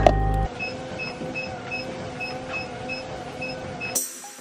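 Music cuts off about half a second in, leaving a car's door-open warning chime: a short high beep repeating about three times a second over a low steady hum.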